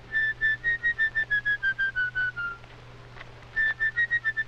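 Solo flute playing a run of short, detached notes, about five a second, that step slowly down in pitch. After a brief pause the same downward run starts again near the end.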